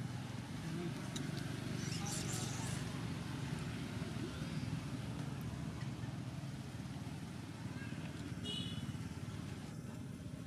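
Steady low outdoor background rumble, with a few faint high chirps about two seconds in and a short high call near the end.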